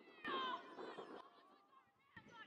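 High-pitched voices shouting and calling out, with a loud call falling in pitch about a quarter of a second in, just after a brief click. Further calls follow, quieter.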